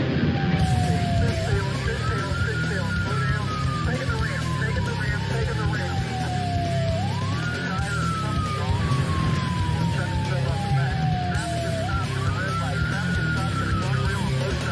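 Police car siren on a slow wail, rising quickly and falling slowly, about every five seconds, three times over. It sounds over background music and a steady low rumble.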